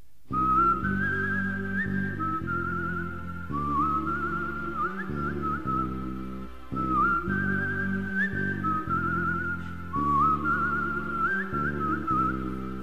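Instrumental break of a song: a high, whistle-like melody line with quick trills over a steady chordal backing, one short phrase played four times, about every three seconds.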